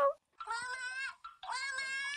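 Two high-pitched kitten meows, each just under a second long, about half a second apart.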